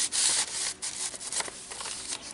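Paper rustling and rubbing as the pages and tucked-in tags of a handmade paper journal are handled and turned. It is loudest in the first half second, then quieter with a few light clicks.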